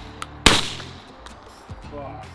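A single shotgun shot about half a second in, its report fading away over about half a second, with background music underneath.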